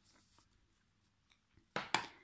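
Faint handling sounds of chunky yarn being purled on plastic knitting needles, with a few light ticks. Near the end comes a short, louder sharp sound.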